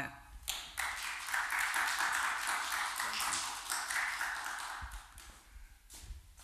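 Audience applauding: many hands clapping together. It starts about half a second in and dies away after about five seconds.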